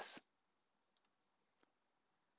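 Near silence with a few faint mouse clicks about a second in.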